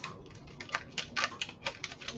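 Plastic wet-wipe packet crinkling in the hands, a run of short, sharp crackles, several a second.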